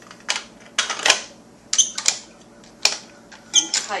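Hard plastic parts of a Green Star twin-gear juicer clacking and knocking together as the filter screen and housing are fitted onto the machine by hand. The clacks come in an irregular series.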